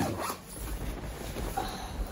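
The zipper of a padded winter jacket being unzipped, a quick rising zip right at the start, followed by the rustle of the jacket being pulled open.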